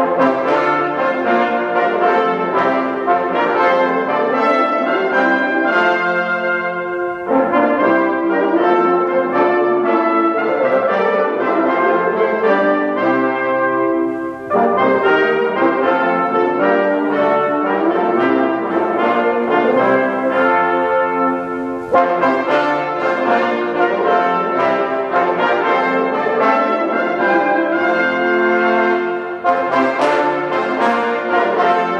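A brass quintet of two trumpets, French horn and two trombones playing live together, in phrases with short breaks between them.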